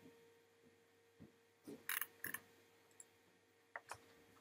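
A few short, sharp computer mouse clicks, a cluster a little before halfway and two more near the end, over a faint steady hum.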